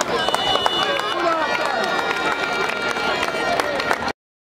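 Mixed voices of spectators and players calling out, with no clear words, over an open football pitch. Several steady high tones are held through the second half, and scattered sharp clicks run throughout.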